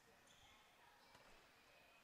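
Near silence: faint gym ambience with a few faint basketball bounces on the hardwood-style court.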